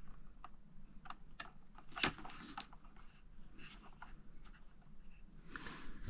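Handling noises of a plastic toy RC helicopter being moved and set down in its carrying case: faint scattered clicks and light knocks, a sharper click about two seconds in, and a short rustle near the end.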